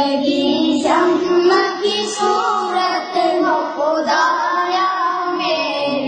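A song with high singing voices over music, the melody held in long, gliding notes.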